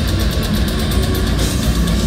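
Brutal death metal band playing live through a venue PA, with heavily distorted guitar and bass over a heavy low end. Fast, even drumming is heard for most of the first second and a half.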